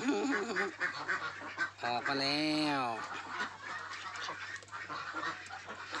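A flock of white laying ducks calling, a continuous chatter of many overlapping short quacks, heard most plainly in the second half under a man's few words.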